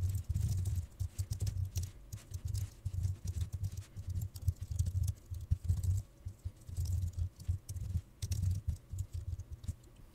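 Typing on a computer keyboard: a quick, irregular run of keystrokes, each a short click with a dull low thud.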